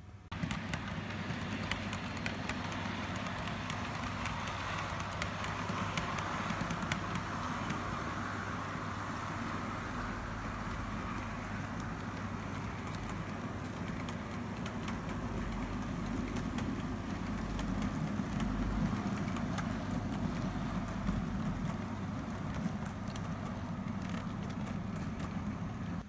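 Model railway train running along the layout's track: a steady rumble with many small clicks from the wheels.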